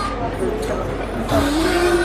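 Background music and people talking, with a long held note that comes in about two-thirds of the way through.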